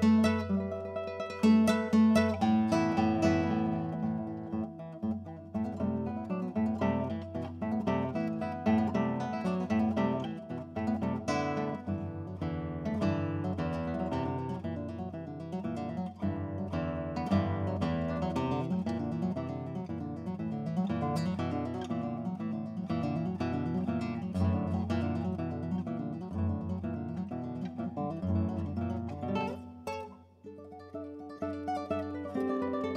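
Solo classical guitar played fingerstyle: a few loud chords in the first seconds, then a quick, steady flow of plucked notes.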